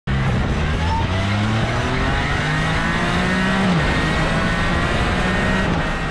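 Can-Am Spyder F3S 1330cc three-cylinder engine running at a steady speed, turning the rear drive belt and wheel. The pitch wanders slightly, with one tone dropping a little past halfway.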